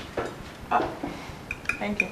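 Dishes and cutlery clinking at a dining table as plates and glasses are handled, with a few short bright clinks near the end.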